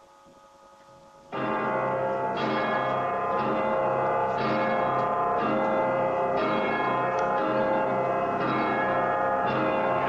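A deep bell tolling, struck about once a second, each stroke ringing on into the next; it begins suddenly after about a second of hush.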